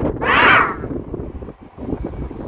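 A single harsh caw, like a bird's call, about half a second long and the loudest thing here, over a steady rumble of wind on the microphone.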